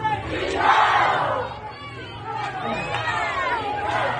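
Crowd of street protesters shouting, with a loud burst of many voices yelling together about half a second in, then fading to scattered overlapping shouts and calls.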